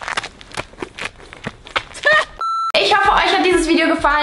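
Irregular sharp clicks and rustles, then a short, steady electronic beep about two and a half seconds in, followed by a woman talking.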